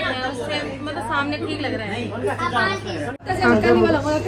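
Several people talking over one another, mostly women's voices, in a lively group conversation. A steady low hum runs underneath, and the sound drops out sharply for a moment about three seconds in.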